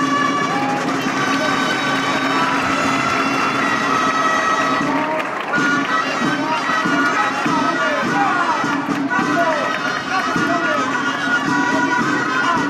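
Gralles, the Catalan double-reed shawms, playing a melody of held, reedy notes over the murmur and voices of a large crowd.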